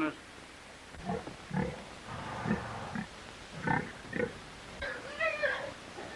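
Pigs grunting in short, separate grunts, about six of them over four seconds, while the pigs roll about drunk on fermented grape-juice leavings.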